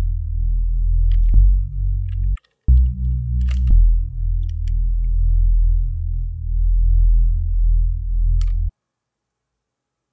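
Sub bass from FL Studio's Sytrus synthesizer: a low sine tone thickened with five detuned unison voices and added harmonics, its volume swelling and dipping as the detuned voices drift against each other. The held notes change pitch a couple of times, with a short break about two and a half seconds in, and the bass stops about a second before the end.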